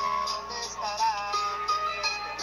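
Rap song: a male voice sings over a beat that carries a steady high tick.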